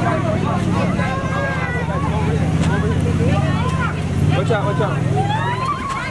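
Children shouting and chattering over the steady hum of the inflatable water slide's electric blower.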